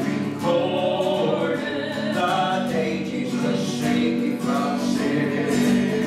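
A woman and a man singing a gospel song together, accompanied by a strummed acoustic guitar.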